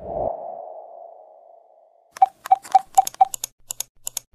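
Intro-animation sound effects: a pop with a ringing tone that fades over about a second and a half, then, from about two seconds in, a quick run of sharp clicks, the first five each with a short ping, like on-screen button clicks.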